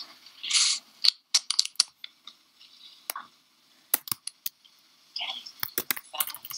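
Computer keyboard keys clicking in short scattered clusters of a few presses each, with two brief hissy bursts in the first second.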